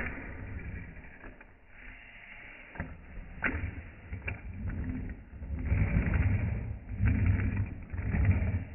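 Small metal fingerboard rail being handled and shifted on a table: a sharp click right at the start, a few lighter clicks in the middle, and several stretches of low rumbling scrape.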